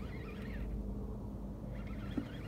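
A steady low hum from the boat's motor running while a bass is played on the rod.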